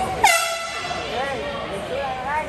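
A single air horn blast, about a second long, starting with a quick drop in pitch before holding a steady, buzzy note, over background chatter.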